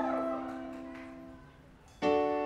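A live band's slow intro: a sustained chord rings out and slowly fades, and the next chord is struck right at the end.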